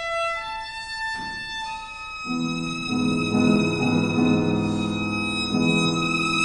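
Violin playing long held notes alone, joined about two seconds in by a C. Bechstein grand piano playing fuller chords beneath the violin line.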